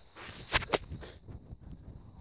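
Golf shot from deep rough: a short swish of the club through the long grass, then two sharp strikes about a fifth of a second apart as the club hits the ball and the turf, about half a second in.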